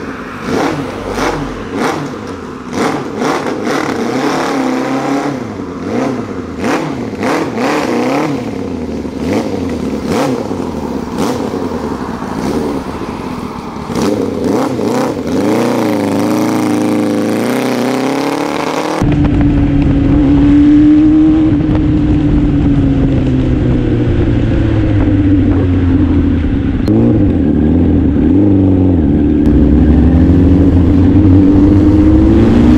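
Suzuki Bandit 600 inline-four engine through Noisy Bastard exhaust pipes, running with a string of sharp throttle blips, then revving up repeatedly as the bike pulls away. About 19 s in the sound cuts to a steadier engine drone under a heavy low rumble as the bike rides along the road.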